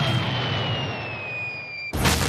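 Cartoon sound effects: the fading rumble of a blast with a high whistle gliding slowly downward as a blasted chunk of rock flies off. A sudden loud crash cuts in right at the end.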